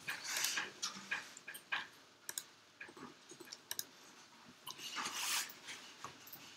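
Computer mouse clicking a few times, with short soft hissy rustles in between.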